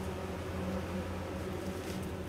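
Room tone: a steady low hum with a faint background hiss.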